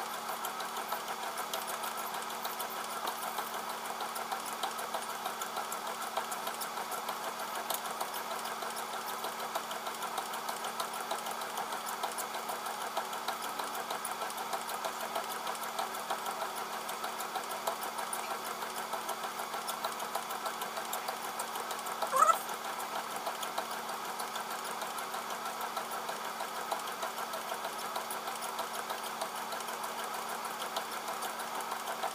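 Motorized treadmill running steadily at walking pace: a motor hum with regular footfalls on the belt. A brief, louder rising sound comes about two-thirds of the way through.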